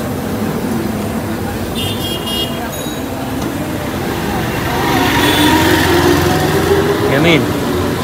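Busy street noise of traffic and background voices, with a short high-pitched horn toot about two seconds in.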